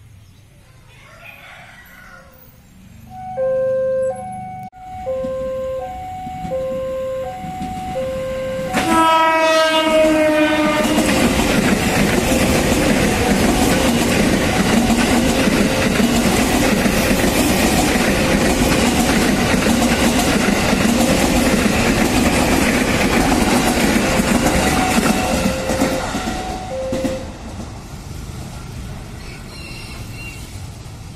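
A level-crossing alarm rings two alternating electronic notes. About nine seconds in, a KRL commuter electric train gives a short horn blast that falls slightly in pitch, then passes at speed with a loud, steady noise of wheels on rail for about fifteen seconds. The train noise fades near the end while the crossing alarm rings on faintly and then stops.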